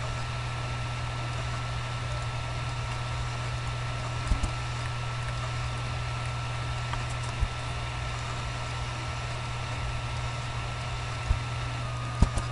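Steady electrical hum and hiss of a computer recording setup, with a constant faint high whine, broken by three short clicks from working the computer, about a third of the way in, past halfway and near the end.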